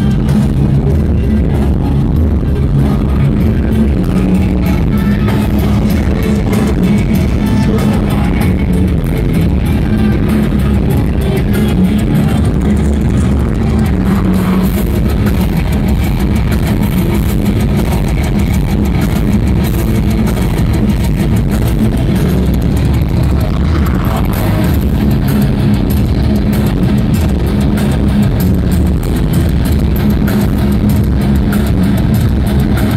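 A live heavy metal band playing loud and without a break: distorted electric guitars, bass and drums.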